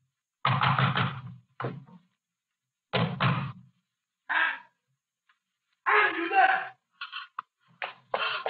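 Urgent knocking on a wooden door in two flurries, about half a second in and again around three seconds. Near the end a man's voice calls from outside.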